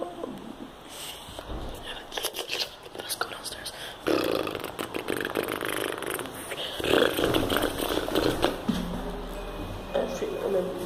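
Indistinct, half-whispered speech from a person close to the microphone, in two stretches through the middle and latter part, with clicks and scrapes of the handheld phone being handled before it.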